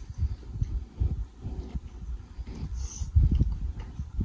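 Close-miked mouth sounds of a man chewing lobster tail meat in butter sauce: irregular soft, wet chewing and lip smacks, with one brief sharper smack about three seconds in.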